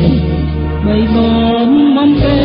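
Music: an old Khmer pop song, with a singer holding long notes over a steady bass accompaniment.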